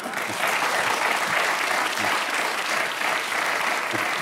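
Studio audience applauding, a dense steady clapping that builds up within the first half second and holds.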